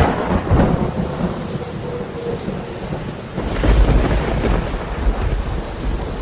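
Thunderstorm sound effect: steady heavy rain with thunder, a sharp crack at the start and a deep rolling rumble that swells about three and a half seconds in.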